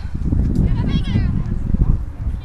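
Outdoor soccer-match sound: high voices shout briefly, a little past the first half-second, over a constant low rumble of wind buffeting the microphone.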